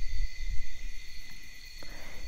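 Steady high-pitched trilling of crickets or similar insects, with a low rumble underneath and two faint ticks in the second half.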